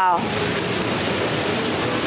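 Steady, even rushing noise of moving air on an open cruise-ship deck, with the tail of a woman's spoken 'wow' at the very start.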